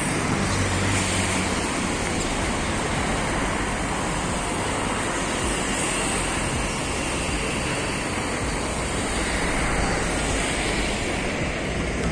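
Steady rushing outdoor noise: wind on the microphone mixed with the hum of street traffic.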